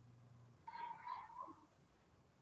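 Near silence, broken about two-thirds of a second in by a faint, brief high-pitched call lasting under a second that trails off lower at its end.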